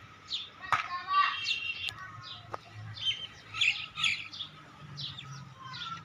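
Small birds chirping, with many short, high calls and quick downward-sweeping notes repeating throughout, and a louder trilled call about a second in.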